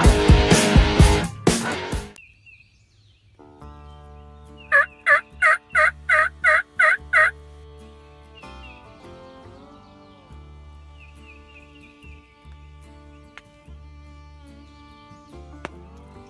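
Loud rock music cuts off about two seconds in. Over a soft, sustained music bed, a turkey yelps about eight times in an even series, roughly three calls a second.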